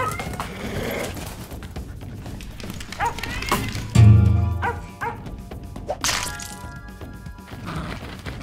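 Cartoon background music with a cartoon puppy's short yips and barks, and a deep thump about four seconds in.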